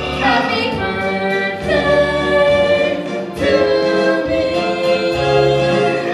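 Stage musical song: voices singing a few long held notes over musical accompaniment.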